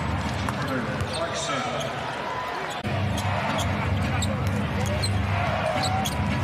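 Live basketball game sound in an arena: steady crowd noise, a ball bouncing on the hardwood court and sneakers squeaking. The sound cuts abruptly a little under three seconds in.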